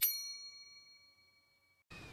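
Notification-bell 'ding' sound effect, struck once, its bright ringing tone fading away over almost two seconds.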